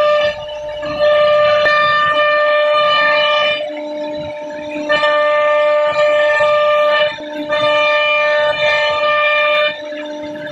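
CNC router spindle whining at a steady high pitch as its bit cuts through a laminated board. The sound dips briefly several times as the load on the cutter changes.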